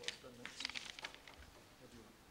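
Faint, indistinct speech in a hall, with a quick cluster of sharp clicks or hissed consonants about half a second in.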